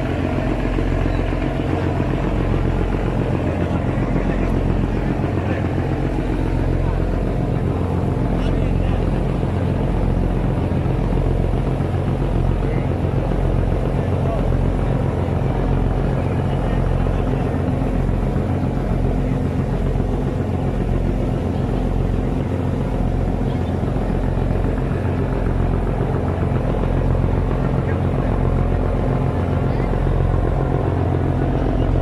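A passenger boat's engine running steadily under way: a loud, low drone with an even throb, over the rush of the boat's wake along the hull.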